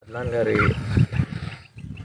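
A man's voice in hesitant, drawn-out vowel sounds, falling in pitch at the start, then brief choppy fragments and a short pause near the end.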